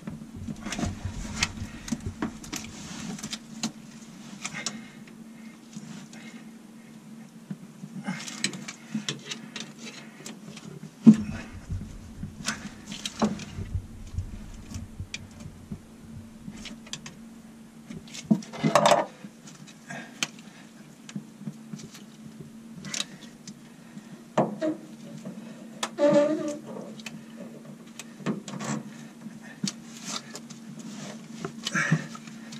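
Scattered clicks, knocks and scrapes of gloved hands handling a narrowboat's stern gland and propeller shaft while fitting greased packing rope, with one sharp knock about eleven seconds in. A steady low hum runs underneath.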